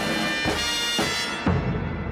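Orchestral theme music with sustained brass chords, a new chord sounding about every half second, and a heavy low hit about one and a half seconds in.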